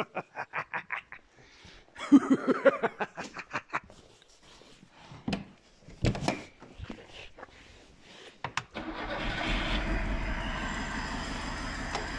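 Lada 2105's four-cylinder engine being turned over by the starter in quick rhythmic pulses, firing unevenly in short bursts, then settling into steady running with a low rumble from about nine seconds in. This is the car's first start after long standing.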